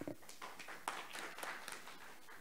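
Scattered applause from a small audience, a few hands clapping irregularly and thinning out near the end.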